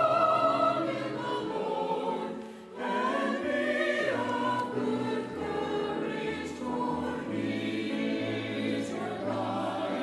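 Church choir of mixed men's and women's voices singing in parts, with a brief break between phrases about two and a half seconds in.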